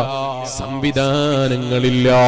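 A man chanting in a melodic, drawn-out voice, holding long notes with a wavering pitch, with a brief break a little under a second in.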